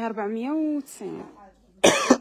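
A person's voice: one drawn-out, wavering vocal sound under a second long, like a hesitant 'ehh', then a short quieter sound; speech starts again near the end.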